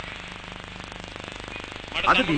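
Steady low hum with a fast, even crackle running through it: the background noise of an old recording.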